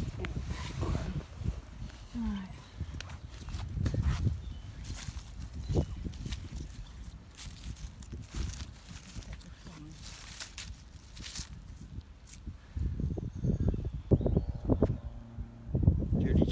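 Handling noise and rustling close to a phone's microphone, with footsteps on soil and grass, loudest near the end.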